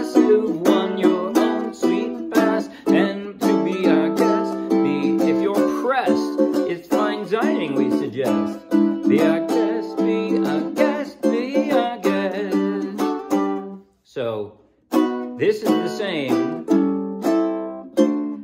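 Ukulele strummed steadily through a chord progression, with a man's voice singing along over it. The playing stops for about a second near the end, then the strumming starts again.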